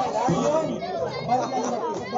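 Several people talking and chattering, with no music underneath.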